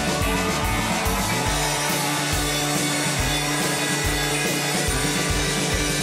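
Live rock band playing an instrumental passage: electric guitar over bass and a steady drum beat.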